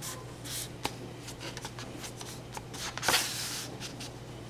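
Oil pastel strokes scratching on toned paper: several short strokes and a sharp click, then a longer, louder stroke about three seconds in, over a steady low hum.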